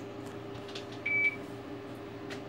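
Ultrasound machine's console giving one short, high-pitched beep about a second in, over a steady low hum from the machine and room, with faint clicks of its keys being pressed.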